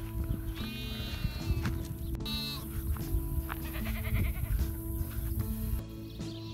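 A goat bleating twice over background music, the second call falling in pitch.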